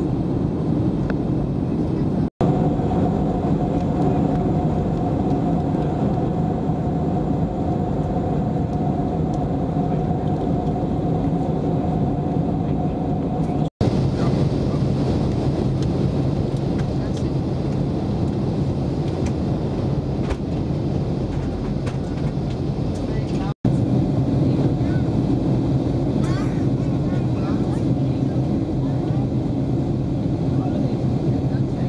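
Steady in-flight cabin noise of a Boeing 737-700 heard from a window seat by the wing: an even rumble of engine and airflow. A steady hum sits over it for the first stretch, and the sound cuts out briefly three times.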